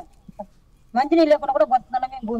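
After a short pause, a woman's voice sets in about a second in, high-pitched and wavering, sounding upset.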